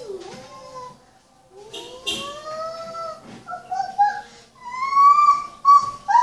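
A toddler's high-pitched, drawn-out vocalizing: several long calls that swell and glide up and down in pitch, the loudest and highest near the end, with a couple of sharp taps in between.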